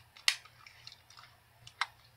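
Handling of a black BB pistol close to the microphone: two sharp plastic clicks, one just after the start and one near the end, with faint rubbing in between.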